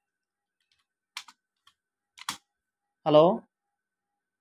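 A few keystrokes on a computer keyboard, in two quick pairs a little over a second and about two seconds in.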